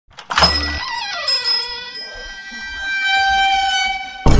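Electronic intro sting: a sharp hit with a short low thud about half a second in, then ringing synthetic tones, one gliding down in pitch, ending on a held note.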